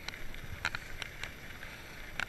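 Full-suspension fat bike rolling along a dirt path: steady tyre and wind noise on the microphone, with a handful of irregular sharp clicks and rattles from the bike over the bumps.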